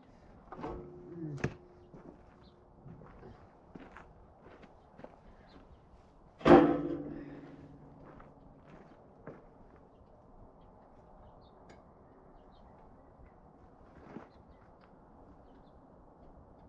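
Scattered light clinks and taps of hand tools working on metal, then one loud metallic clang about six and a half seconds in, ringing briefly as it dies away: a removed steel tractor part dropped onto the ground beside another steel part.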